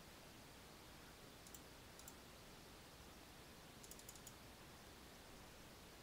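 Near silence broken by a few faint computer mouse clicks: single clicks about one and a half and two seconds in, then a quick run of clicks around four seconds.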